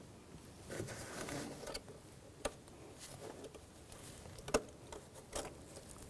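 Faint handling sounds as a plastic electrical connector is worked onto a camshaft position sensor by a gloved hand: soft rustling, then a few small sharp clicks, the clearest about two and a half and four and a half seconds in.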